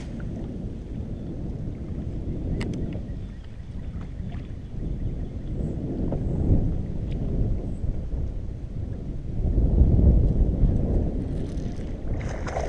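Wind buffeting the camera microphone: a gusty low rumble that swells about halfway through and again near the end, with a few faint clicks.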